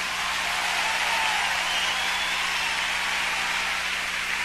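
Concert audience applauding and cheering at the end of a song, a steady, even wash of clapping with a few faint whistles.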